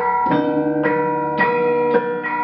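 Javanese gamelan ensemble playing: bronze saron bars struck with mallets, a new note about twice a second, each ringing on over the next.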